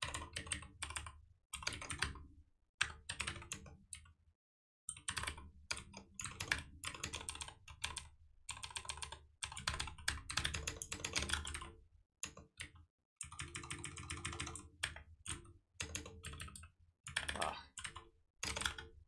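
Computer keyboard typing: quick runs of keystrokes in bursts, broken by short pauses.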